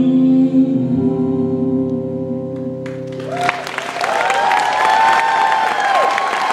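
The final chord of a live pop ballad is held and dies away. About three seconds in, the concert audience breaks into applause and cheering.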